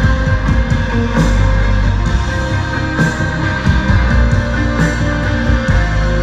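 Live band playing an instrumental passage: sustained electric guitar over drums, with no vocals.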